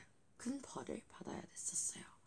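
A girl speaking softly under her breath, mostly whispered, with a short hissing 's'-like sound near the end.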